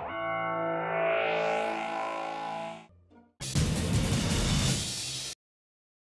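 Television show transition sting: a sustained, heavily effected chord for about three seconds, then a noisy whoosh of about two seconds that cuts off suddenly.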